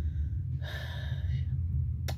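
A woman drawing one audible breath of about a second between sentences, over a steady low hum.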